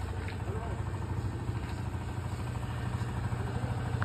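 Steady low mechanical rumble, with faint voices talking in the background.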